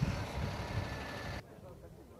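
Heavy road-works vehicle engines running close by, a loud rumbling noise that cuts off abruptly about one and a half seconds in; after the cut, faint chatter of a crowd of people.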